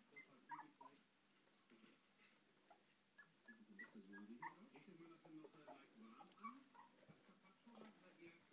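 Three-week-old Italian greyhound puppies whimpering faintly, with short high squeaks scattered through and low wavering grunts in the middle.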